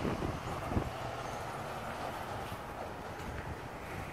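A light breeze buffeting the microphone: a steady low rumble with nothing else standing out.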